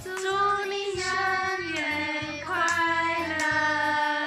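A song sung in a child's voice with long held notes, over an accompaniment with a steady low beat.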